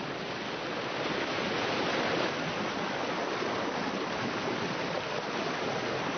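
Fast-flowing floodwater rushing past in a steady, even roar of water.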